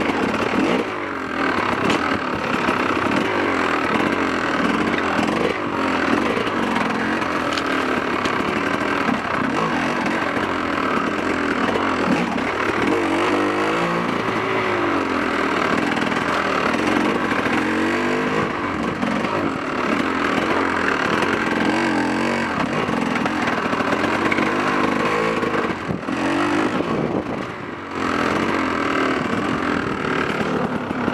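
Off-road dirt bike engine heard from the rider's position, its revs rising and falling constantly as the throttle is worked on a slow, rocky trail. The engine note drops briefly about a second in and again near the end as the throttle is rolled off.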